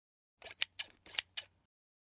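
Typing sound effect: about half a dozen sharp key clicks over about a second, starting about half a second in.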